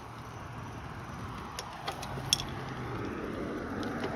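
Steady low hum of vehicles on the street, with a few faint light clicks around the middle.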